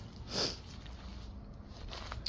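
A single short sniff through the nose, about half a second in, over faint steady outdoor background noise.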